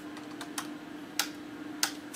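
A few irregular clicks of keys being typed on a computer keyboard, over a faint steady hum.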